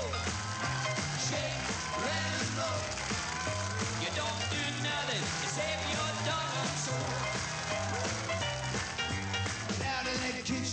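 Upbeat 1950s-style rock and roll band music, with piano, electric guitar and horn over a moving bass line.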